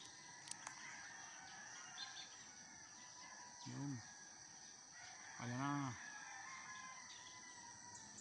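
Quiet outdoor ambience with a steady high-pitched hum and faint distant bird calls, broken twice by a short low human voice sound, about four and about five and a half seconds in.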